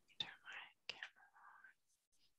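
Near silence in a pause between sentences, with a few faint, soft vocal noises like a whisper or breath in the first second and a half.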